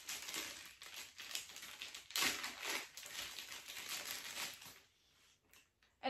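Plastic packaging crinkling and crackling in the hands as a small tripod part is unwrapped, stopping about a second before the end.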